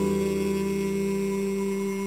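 Music: a single long chord held steady and slowly fading.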